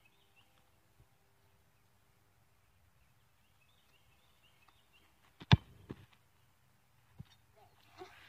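A soccer ball kicked once from close by, a single sharp thud about five and a half seconds in, followed by a couple of fainter knocks.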